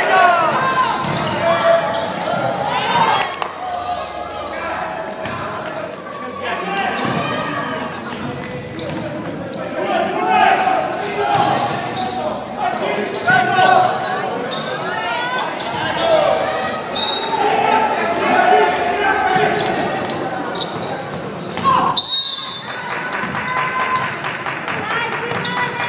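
Basketball game in an indoor arena: a ball bouncing on the court amid voices calling out, echoing in the hall.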